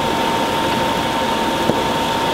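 A saucepan of Coca-Cola boiling hard as it reduces to a thick sugar syrup: a steady bubbling hiss under a constant thin hum, with a single faint tick near the end.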